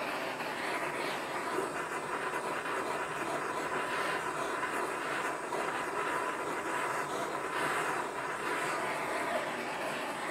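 Handheld propane torch burning with a steady hissing flame, played over graphite molds to preheat them and drive off any moisture before molten copper is poured.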